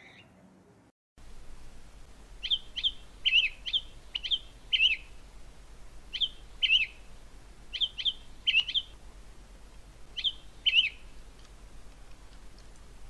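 Bird chirping: short high chirps in pairs and small clusters, repeated every second or so, over a faint steady low hum.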